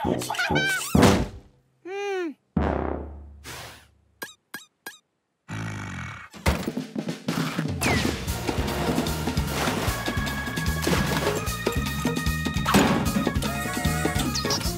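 Cartoon soundtrack: short character vocalisations and comic sound effects in the first few seconds, including a tone that rises and falls and a few sharp clicks. From about halfway, background music with a steady beat takes over.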